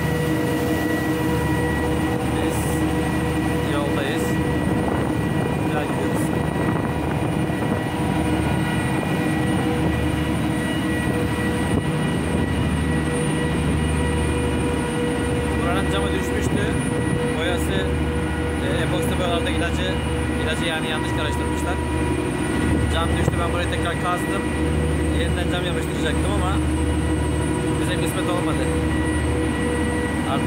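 Twin Yuchai marine diesel engines of a small vessel under way, a steady low drone with a constant hum on top, and wind buffeting the microphone on deck.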